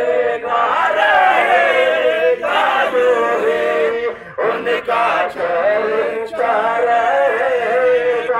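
A man singing a naat, Urdu devotional verse in praise of the Prophet, into a handheld microphone and amplified through a horn loudspeaker. He holds long, wavering notes, with short breaks between phrases.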